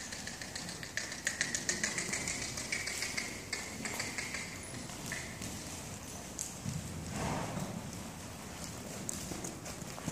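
Hispano-Arab stallion trotting on the soft sand of an indoor arena: a quick, even run of hoofbeat clicks, strongest in the first few seconds.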